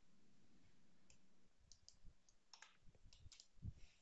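Near silence with faint, scattered clicks of a computer keyboard as text is edited, and one slightly louder knock near the end.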